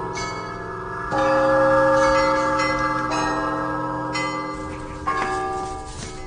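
Bells struck several times, the loudest strike about a second in and more about every second near the end, each tone ringing on and overlapping the last.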